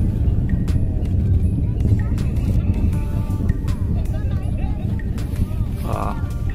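Steady, low rumbling roar of a Long March 6A rocket in flight, heard from a distance on the ground. Faint music and voices run over it.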